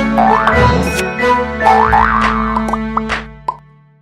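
Cartoon-style jingle music for an animated logo, with springy rising-and-falling pitch swoops and a few sharp hits, fading out near the end.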